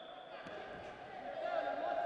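Wrestling-arena ambience: voices around the hall and faint contact sounds of two heavyweight freestyle wrestlers grappling on the mat, a little louder about one and a half seconds in.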